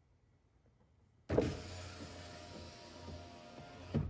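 Audi driver's door power window motor lowering the glass, run by a scan tool's window regulator actuation test. It starts abruptly about a second in with a loud jolt, then runs with a steady hum and stops with a short knock near the end.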